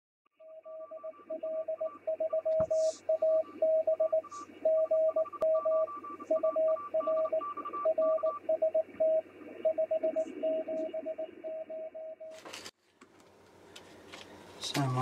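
Morse code: a single steady tone keyed on and off in dots and dashes for about twelve seconds over a constant hiss, ending with a short crackling burst.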